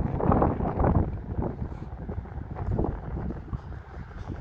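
Wind buffeting the microphone: a low rumbling noise that rises and falls in gusts.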